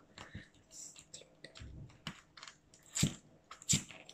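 Sticky tape being peeled off a clear plastic toy ball: a run of small crackles and clicks, with two louder clicks about three seconds in and just before the end.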